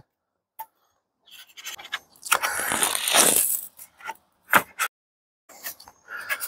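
HiveIQ polystyrene hive wall panel scraping as it is slid down into the grooves and corner pieces of the box, over about two seconds, followed by a few short knocks as it seats.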